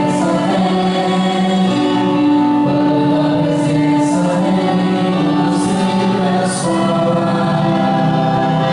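Live gospel worship music: several voices singing with a band over long held chords.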